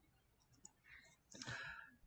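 Near silence, with a few faint clicks and one brief faint noise about a second and a half in.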